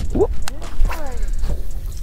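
Shimano Curado K baitcasting reel spooling out line on a cast: a click, then a whir that falls in pitch around a second in as the spool overruns into a backlash. Wind rumbles on the microphone throughout.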